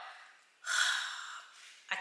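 A woman's sharp in-breath, a gasp of about a second, starting just past half a second in. Before it, her last word dies away in the echo of a bare, unfurnished room.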